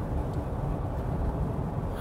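Steady low drone inside the cabin of a Ford Ranger Bi-Turbo cruising at about 120 km/h: its 2.0-litre twin-turbo four-cylinder diesel engine together with road noise.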